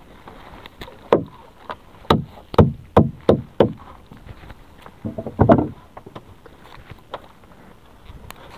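Irregular hollow knocks and thumps against a small fishing boat's hull as a gillnet and gear are handled aboard: about six single knocks over the first few seconds, then a quick cluster of knocks past the middle.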